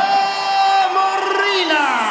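A man's voice drawing out one long, high call on a held note, falling away near the end, the way a ring announcer stretches out the winner's name, over crowd noise.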